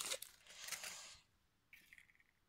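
Faint rustling of packaging being handled for about the first second, then near silence.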